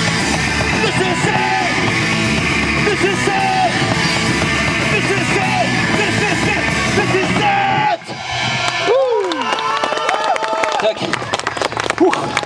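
Punk band playing live: distorted electric guitar, bass and drums under shouted vocals. The song stops abruptly about eight seconds in, followed by shouting voices.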